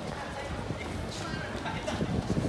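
Footsteps of several people walking on a wooden plank boardwalk, irregular hollow knocks of shoes and sandals on the boards, with voices talking in the background.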